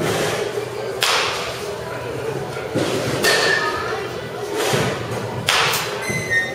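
About five sharp smacks a second or two apart, batting-cage sounds of baseballs being hit and striking the netting, with a murmur of voices behind.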